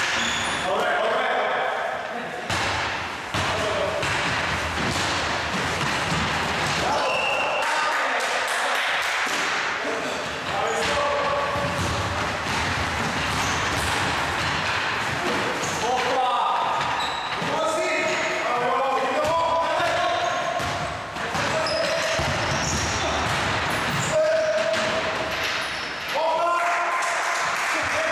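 A basketball bouncing and being dribbled on a wooden gym floor during play, with short thuds and players' shouts over it.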